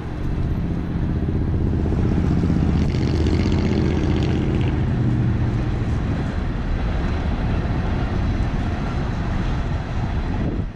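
Road traffic: a motor vehicle's engine hum passing close by, fading out about six seconds in, over a steady rumble.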